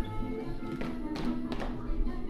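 Music accompanying a group dance, with dancers' feet tapping and landing on the wooden stage floor. A few louder footfalls come in the second half.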